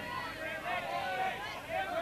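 Voices talking in the background, softer than the commentary around them, with no bat or ball sound.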